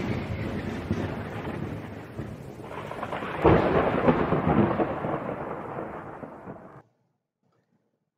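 Thunder: a rumble dying away from a clap just before, then a second sharp thunderclap about three and a half seconds in that rolls and fades, cutting off suddenly about a second before the end.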